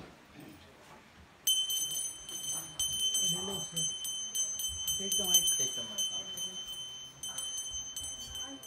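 Small metal hand bell rung rapidly and continuously for aarti worship, starting suddenly about a second and a half in. Its clapper strikes follow each other quickly, keeping a steady high ring.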